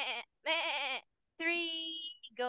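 A voice imitating a goat's bleat, 'meh, meh': two short wavering calls, then a longer held call that trails off near the end.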